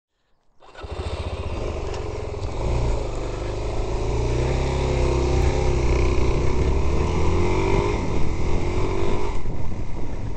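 Suzuki DR-Z400S single-cylinder four-stroke engine running as the motorcycle rides along, starting about half a second in. Its note wavers and climbs a little through the middle, then eases near the end as the throttle comes off.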